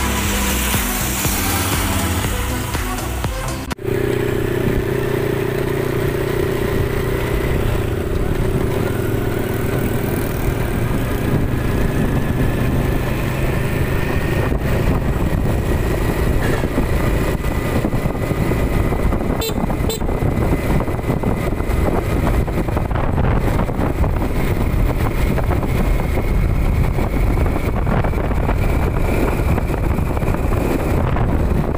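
Background music for the first few seconds, then a sudden cut to a motorcycle being ridden along a road: the engine running under a steady rush of wind on the microphone, with a faint whine that slowly rises in pitch.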